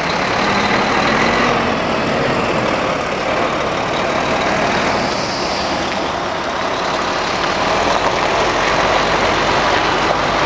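Diesel engine of a Volvo FH fuel tank truck running steadily at idle, close by.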